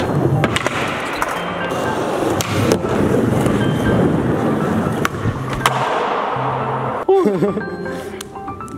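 Skateboard wheels rolling steadily over a smooth concrete floor, broken by several sharp clacks as the board pops and lands on ollies up and off a drop.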